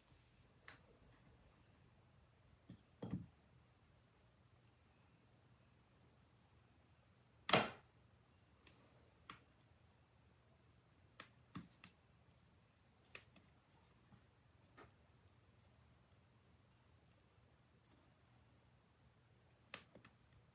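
Quiet tabletop handling of craft tools and paper: scattered faint clicks and taps, with one sharp, much louder click about seven and a half seconds in.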